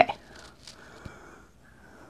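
Faint, soft swishing of a powder blush brush sweeping over the cheek.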